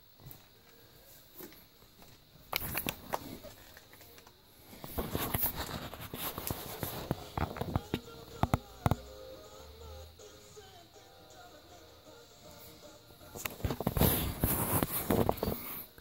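Rustling, clicks and knocks of a phone being handled and moved about, loudest in spells about 3 s in, from 5 to 9 s and near the end, with faint music in the background.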